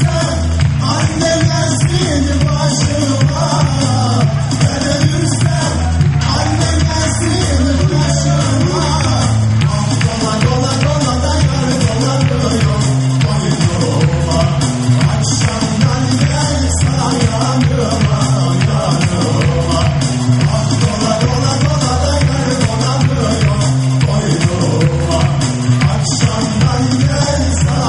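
Live amplified band music with a male singer in a hall, over a steady, repeating bass beat.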